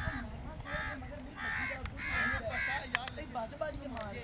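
Bird calls: a run of harsh, repeated calls about every half second, with a few sharp clicks near the end.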